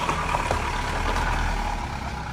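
A silver Opel Vectra driving slowly past close by on a gravel track: a steady low engine rumble mixed with tyre noise, easing slightly towards the end.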